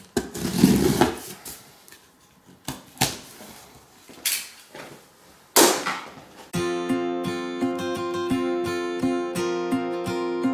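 A blade slicing and ripping through packing tape on a cardboard box: one long rip near the start, then a few short separate rips. About six and a half seconds in, background guitar music starts and runs on.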